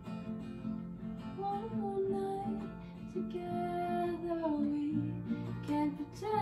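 Acoustic guitar strummed in a steady rhythm, with a woman's voice singing long, held notes over it from about a second and a half in.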